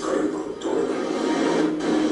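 Documentary film soundtrack played back through a speaker: music, with a voice over it.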